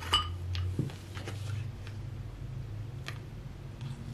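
A few light clicks and taps of oracle cards being handled and drawn from the deck, over a steady low hum.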